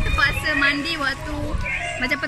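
A baby's high-pitched voice in short, wavering cries.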